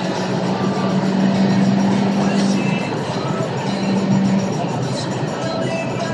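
Seat Leon Cupra R's turbocharged four-cylinder engine pulling at high revs under full load in fifth gear, heard inside the cabin as a steady engine drone over heavy wind and road noise. Music plays along with it.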